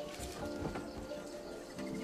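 Quiet background music of soft held notes, with a few faint clicks.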